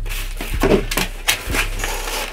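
Cardboard box and packing material being handled: rustling and scraping with several short knocks.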